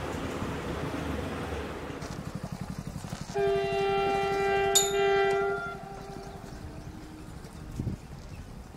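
A locomotive horn sounds one steady blast of about two seconds, starting a little over three seconds in, with a sharp click near its middle.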